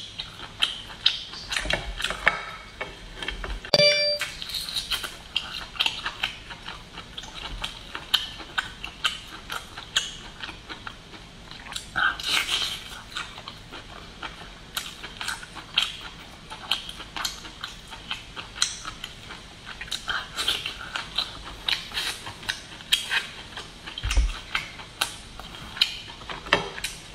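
Close-miked eating of garlic-topped lobster by hand: wet chewing and mouth clicks, with small taps and clicks of shell and plate, many sharp clicks in quick succession. A brief tone sounds about four seconds in.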